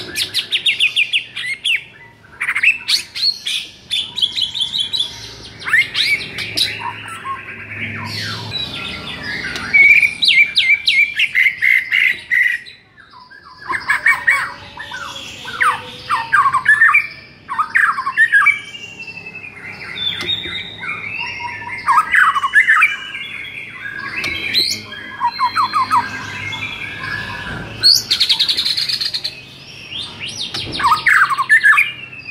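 White-rumped shama (murai batu) singing a long, loud run of varied phrases: rapid trills, clear whistled glides and harsh rattling notes, with a short pause about halfway.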